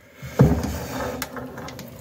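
A case splitter being cranked down by hand on Honda TRX400EX engine crankcases, pushing the halves apart. There is a knock about half a second in, then a steady mechanical noise as the cases separate.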